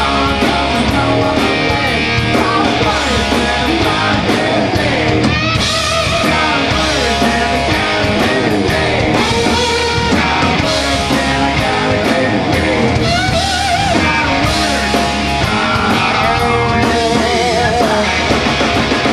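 Live punk rock band playing loudly: electric guitars, bass and drums.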